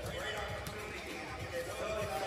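Music with a vocal playing over an arena's public address system, echoing in the large hall, with basketballs bouncing on the court underneath.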